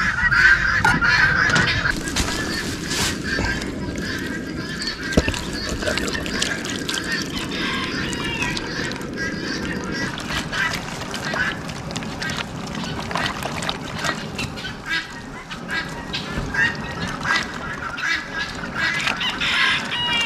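Geese honking repeatedly, with sharp clicks of a knife cutting potatoes on a plastic cutting board in the first seconds.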